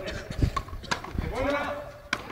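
Sharp knocks of a frontenis ball struck by rackets and hitting the fronton wall during a rally, about three in the first second and a half. Then a drawn-out vocal call in the second half.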